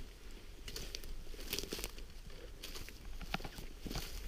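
Footsteps crunching and crackling through dry leaf litter, twigs and a thin layer of snow on the forest floor, in scattered irregular crackles.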